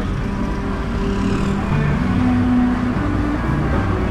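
Street traffic in a jam: a motor scooter and the cars around it idling and creeping forward with a steady low rumble. Music plays over it, its held notes changing pitch every half second or so.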